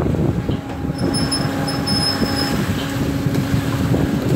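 A machine motor running with a steady low hum over rumbling noise, with a faint high whine that comes and goes between about one and two and a half seconds in.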